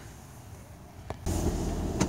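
Low room tone with a single click, then, a little over a second in, the steady low rumble of a car driving, heard from inside the cabin, starts suddenly.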